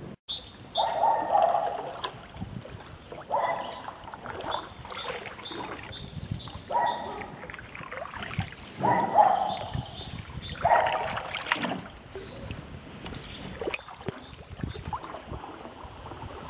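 Touring canoe paddle strokes in floodwater: five watery swishes, about two to two and a half seconds apart, then quieter water near the end.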